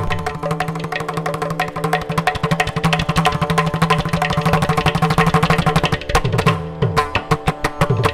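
Mridangam and ghatam playing together in a fast Carnatic percussion passage, with dense, rapid strokes. The playing eases briefly a little after six seconds in, then picks up again.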